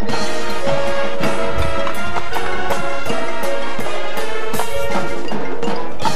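High school marching band playing its field show: held ensemble chords over a steady run of percussion strikes, with marimbas and other keyboard percussion from the front ensemble.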